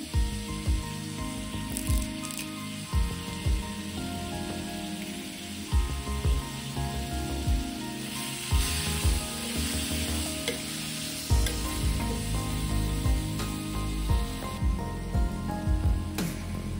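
Sliced onions and tomatoes sizzling in oil in an earthenware clay pot, a steady frying hiss. A metal spoon stirs through them with irregular knocks and scrapes against the pot.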